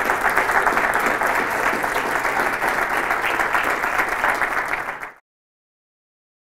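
Audience applauding at the end of a lecture, a dense, even clapping that cuts off abruptly about five seconds in.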